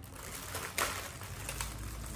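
Faint rustling and handling of a plastic-bagged remote control, with a couple of soft crinkles or taps. A low steady hum comes in a little past halfway.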